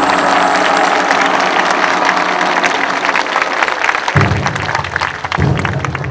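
Audience applauding as the music's last notes fade. About four seconds in, low drum strokes begin, twice, roughly a second apart.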